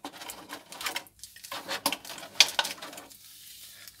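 Clear plastic blister packaging crackling and clicking as small parts are pried out of it with a screwdriver, in a quick irregular run of clicks that dies down about three seconds in.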